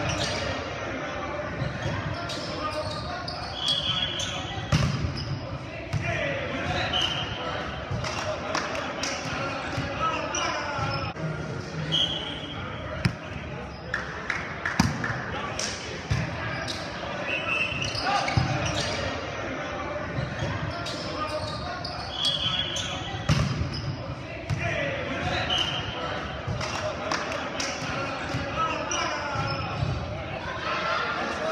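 Indoor volleyball play in a large gym: sharp smacks of the ball being hit, short squeaks of sneakers on the hardwood court every few seconds, and players' voices calling out, all echoing in the hall.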